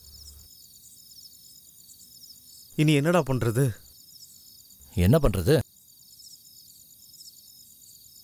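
Crickets chirping steadily in an evenly repeating high-pitched pattern, with two short spoken phrases about three and five seconds in.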